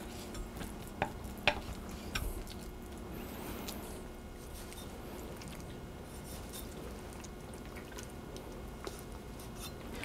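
Knife slicing raw goose meat on a wooden cutting board: a few light knocks of the blade against the board in the first couple of seconds, then faint soft cutting and handling of the meat.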